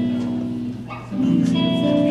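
Live gospel band music led by guitar: a held chord fades away, then a new chord is struck about a second in and rings on.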